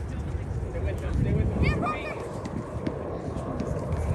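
Indistinct shouts from children playing soccer, one short burst of calls about halfway through, over a steady low rumble.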